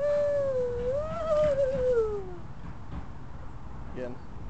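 A long, drawn-out voice call lasting about two and a half seconds: it rises, wavers in the middle, then slides down in pitch and fades.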